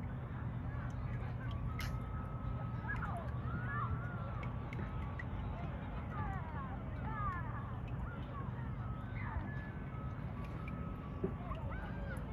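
Outdoor ambience: distant, indistinct voices and scattered high bird calls over a steady low hum.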